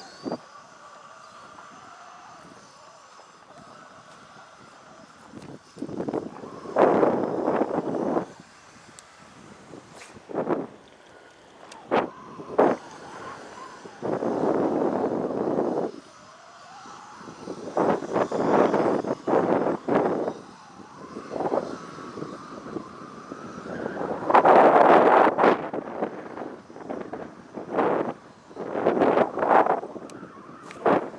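Wind gusting across the microphone in irregular loud bursts, some brief and some lasting a couple of seconds, with quieter stretches between them.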